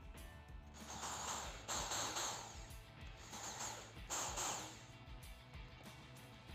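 Cordless drill-driver boring pilot holes into melamine board: four short bursts of drilling, each under a second, the last two after a pause of about a second.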